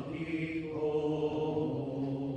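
Church choir singing a psalm setting, the voices holding long sustained notes together.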